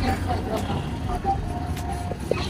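Roadside street background: a steady low rumble of traffic with faint distant voices.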